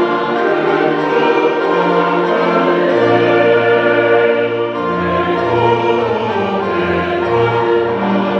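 A choir singing in long, sustained chords, with a lower bass part coming in about three seconds in.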